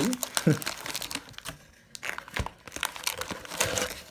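Glossy plastic wrappers of thick Pokémon VS booster packs crinkling and rustling as the stack is slid out of its cardboard box. The crackling is irregular, with a short pause about a second and a half in.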